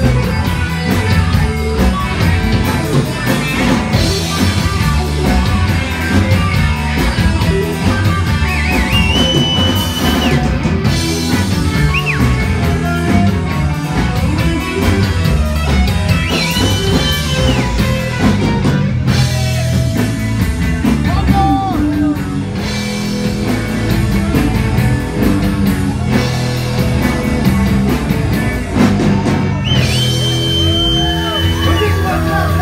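Live rock band playing loudly: electric guitar and drum kit over a heavy bass line, with some singing, heard through the room.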